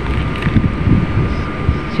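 Steady low rumble of background machinery, with a few light crinkles from the plastic film lid of a packaged rice meal being handled and peeled back.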